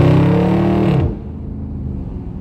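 Dodge Scat Pack's 392 HEMI V8 pulling hard under acceleration, heard from inside the cabin, its note climbing and then holding high before dropping away sharply about a second in to a quieter cruise.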